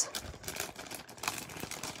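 Thin clear plastic bag of die-cut paper pieces rustling and crinkling faintly as it is handled, with scattered small clicks.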